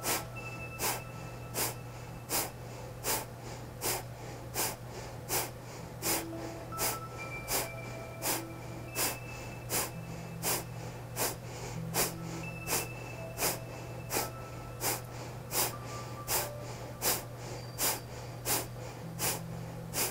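Kapalabhati breathing: a steady run of short, forceful exhales through the nose, about three every two seconds, with the passive inhales between them barely heard.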